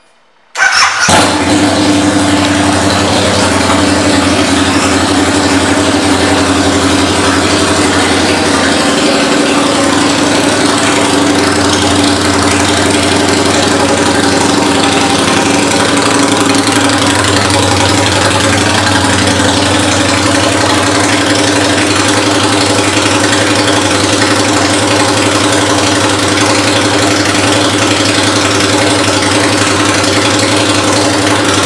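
2007 Harley-Davidson Night Rod's liquid-cooled Revolution V-twin, fitted with an aftermarket exhaust, starting up just under a second in and then idling steadily and loudly.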